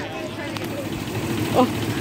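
Bus engine idling with a steady low hum, and a short voice near the end.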